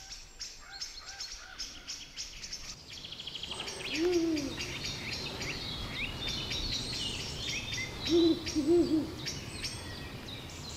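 Ural owl hooting: one low hoot about four seconds in, then a pair of hoots close together near the end. Small songbirds chirp high in the background, with a quick ticking trill just before the first hoot.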